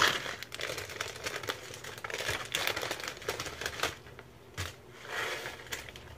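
Plastic instant-noodle packet crinkling and rustling in irregular bursts as it is handled and shaken out to empty the last noodle crumbs, after a sudden sharp noise right at the start.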